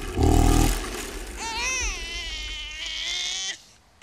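A short, loud burst of vehicle noise from outside, followed from about a second and a half in by a baby crying in wavering wails for about two seconds, woken by the noise.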